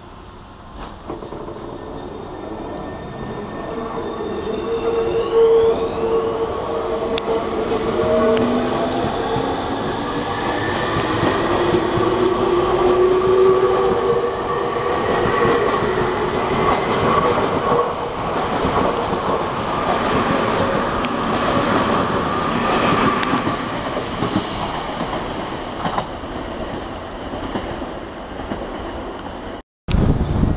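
Tobu 30000 series electric train pulling away from a platform, its traction motors' inverter whine rising in pitch in several tones as it speeds up, over growing rumble and wheel noise. The sound cuts off suddenly just before the end.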